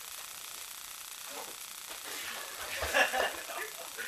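A person taken down onto foam training mats: a couple of dull thuds about three seconds in, among scuffling and brief voices.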